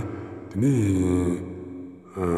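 A man's low voice chanting in a drawn-out, sing-song way. About half a second in, it lifts and falls in pitch, then holds a long syllable and fades toward the end.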